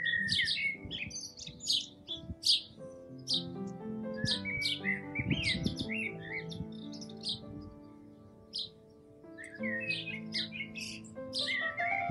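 Small songbirds chirping and twittering in clusters of quick calls, with a lull of a second or two past the middle. Underneath is soft background music of long held notes.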